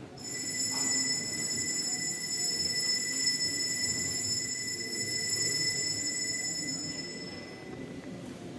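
A bell struck once, ringing on with a few high, clear pitches for about seven seconds; the highest pitches die away first, near the end. Under it is the low hum of a large, reverberant church.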